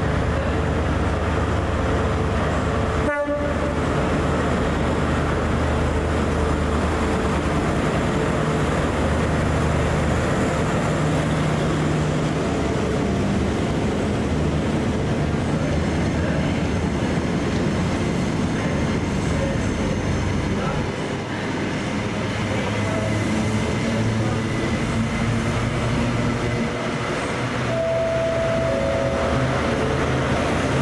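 Class 43 HST diesel power car engines running under power as the train pulls out, with the Mk3 coaches rumbling past over the track. The sound is loud and steady throughout, and there is a momentary dropout about three seconds in.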